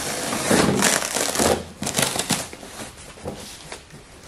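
A large cardboard box being cut and pulled open with a utility knife: irregular scraping and crinkling of cardboard and packing tape, louder in the first couple of seconds and quieter after.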